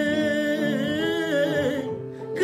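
A man singing a long, held wordless vocal line in manele style, the pitch wavering and ornamented, fading near the end.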